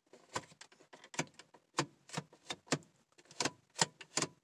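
Automatic transmission shift lever of a 2001 Subaru Outback being worked back and forth through its gear positions, giving a dozen or so sharp clicks at uneven intervals as it passes the detents.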